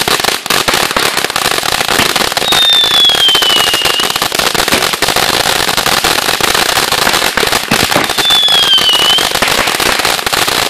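Consumer ground firework spraying sparks with a steady hiss and rapid crackling pops throughout. Two falling whistles cut through, one about two and a half seconds in and a shorter one near the end.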